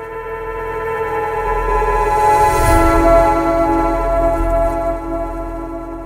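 Logo sting: a sustained synthesized chord over a low rumble that swells to a peak about halfway through, then fades a little toward the end.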